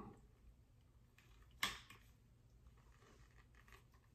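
Near silence with one short click about a second and a half in: the Spypoint Cell Link's SD-card adapter being pushed into the trail camera's card slot.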